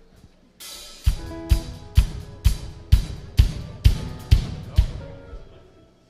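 Live worship band's drum kit kicking off a song: a cymbal, then a steady beat of heavy drum hits about two a second under a few sustained bass and guitar notes, which stops about five seconds in. The drummer has started a song that the leader had switched without telling him.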